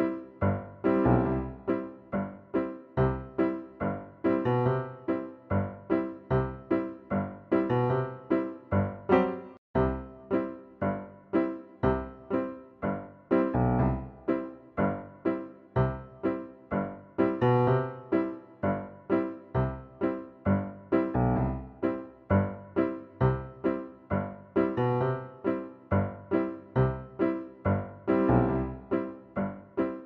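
Background piano music: a steady, even run of struck notes, about two a second.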